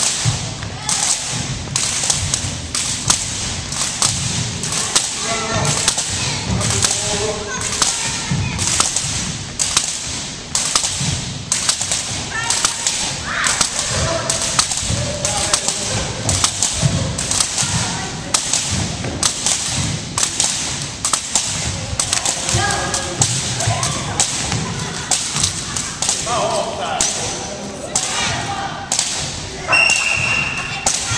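Long jump ropes slapping the wooden gym floor on each turn, a steady rhythm of a little more than one slap a second, with faint voices underneath.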